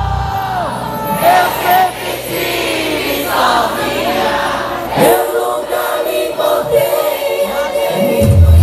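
Live forró band music: a woman singing into a microphone over sustained accordion, with the bass and drums dropped out. The full band comes back in at the very end.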